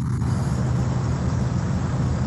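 Loud, steady rumbling noise picked up by an open microphone on a video call.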